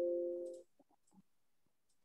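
Computer warning chime sounding as a Photoshop 'No pixels were selected' alert box pops up: a short chord of steady tones that fades out about half a second in. A couple of faint clicks follow.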